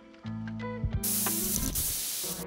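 Background music with held notes; about a second in, an aerosol spray-paint can starts hissing over it.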